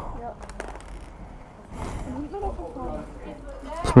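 Quiet, muffled talking, with a few light clicks and a rustle as a motorcycle helmet is unfastened and pulled off.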